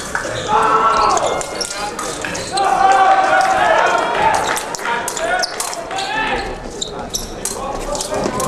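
Fencers' shoes squeaking and stamping on the piste during footwork, with a run of squeaks about half a second in and again from about two and a half to four seconds, over voices in the hall.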